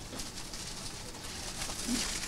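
Faint background ambience with pigeons cooing.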